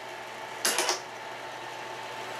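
Elmo 35-FT(A) filmstrip projector running with its cooling fan on, a steady hum with a faint whine. A little over half a second in comes a brief mechanical rattle as the film advance catches the filmstrip being threaded.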